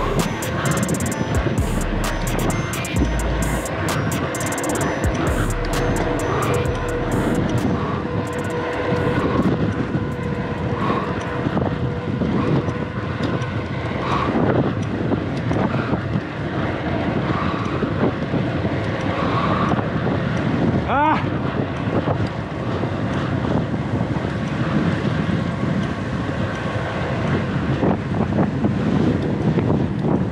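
Steady rush of wind on the camera microphone, with tyre noise, as a loaded touring bicycle rolls fast down a gentle descent on asphalt.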